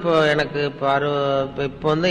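A man's voice reciting in long, level-pitched, chant-like phrases, with short breaks between them.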